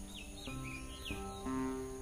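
Background music of sustained notes, with a bird chirping four short, quick, falling chirps in the first second.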